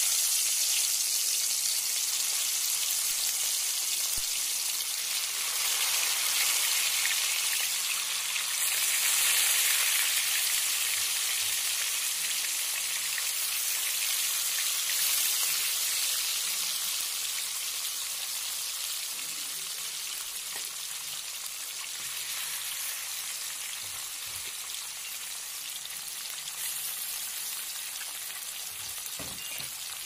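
Round fish steaks frying in hot oil in a kadai: a steady sizzle that is loudest in the first half and eases off gradually toward the end.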